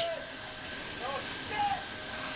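Two faint, brief vocal sounds, about half a second apart, over a steady background hiss.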